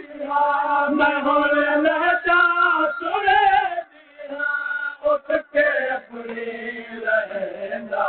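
Male noha reciters chanting a Shia mourning lament in long melodic phrases, with a brief pause about four seconds in before the chant resumes.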